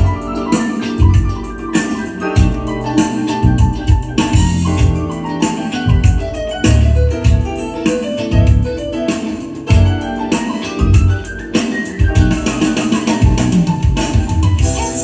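Keyboard- and organ-led music with a steady, heavy bass beat, played loud through a PWT SHE V2 transistor amplifier board and its speaker during a listening test. A rising sweep comes in about ten seconds in.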